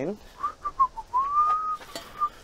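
A person whistling: four short notes followed by one long note that slides upward and levels off.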